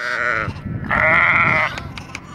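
Lambs bleating: a short bleat, then a longer, louder one about a second in.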